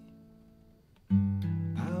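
Acoustic guitar capoed at the second fret: a strummed chord rings and fades away, then a fresh strum comes in about a second in. A man's singing voice starts near the end.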